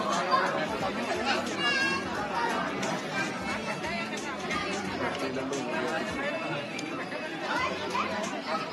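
Many people chattering at once, overlapping voices in a busy gathering, with a brief high-pitched sound about one and a half seconds in.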